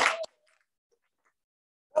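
Hands clapping under one long held vocal call, both cutting off about a quarter second in, then near silence.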